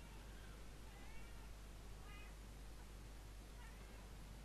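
A cat meowing faintly a few times in short calls, about a second in, around two seconds in and again near the end, over a low steady hum.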